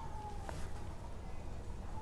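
A pause in the talk: low, steady room hum with a single faint click about half a second in.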